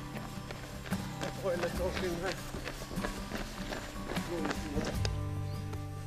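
Footsteps of several people jogging on a paved path, a quick, uneven patter of steps, with faint voices and background music under them.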